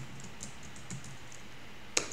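Typing on a computer keyboard: a run of light key clicks, with one sharper, louder keystroke near the end.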